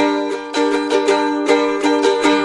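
A plucked string instrument strumming chords between sung lines of a folk-blues song, about two strums a second with the chords ringing on between them.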